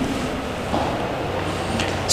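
Steady background noise, a low rumble under a hiss, with no distinct event.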